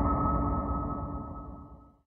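The song's closing sustained note, a steady ringing tone over a low rumble, fading out and cutting off at the very end.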